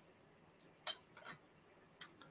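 Near silence broken by a few light clicks, the loudest about a second in: fingernails clicking against a hand-blown glass Christmas ornament as it is handled.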